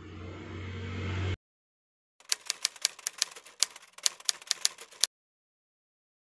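Low hum and room noise swelling, then cut off abruptly a little over a second in. After a short silence come about three seconds of quick, uneven typewriter key clicks, a typing sound effect.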